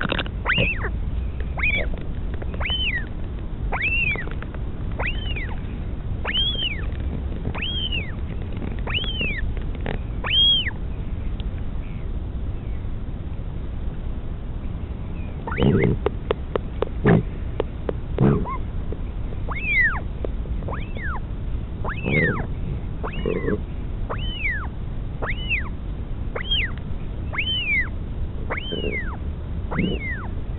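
Northern royal albatross chick giving short, high begging calls that rise and fall, about one a second, while its parent feeds it. The calls pause for several seconds midway. A few dull low knocks come around the middle, over a steady low rumble.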